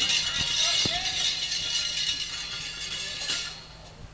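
Gamelan music fading at the end of a sung piece: ringing metallic tones die away, with a short sung note about a second in.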